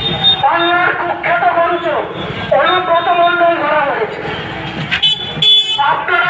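A man's voice shouting political slogans in two long, drawn-out phrases, amplified and sounding thin through a loudspeaker. A short vehicle horn toot comes near the end.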